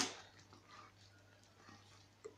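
Thick cream sauce bubbling faintly in a pan, with a few soft plops, over a low steady hum.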